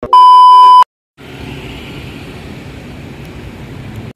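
TV colour-bars test tone: a single loud, steady beep lasting under a second that cuts off abruptly. After a brief silence, steady street noise with traffic follows.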